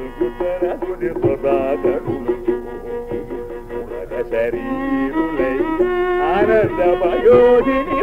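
Live Carnatic concert music from an old, narrow-band recording: a melodic line with sweeping gamaka glides over mridangam strokes, in raga Shri. The strokes are thick in the first half, then the melody grows louder with wide glides.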